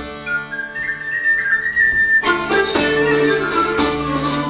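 Medieval ensemble playing a saltarello. For about the first two seconds the drum drops out and a pipe holds a high note over quieter sustained tones; then frame drum, plucked strings, bowed fiddle and pipe come back in together with a steady dance beat.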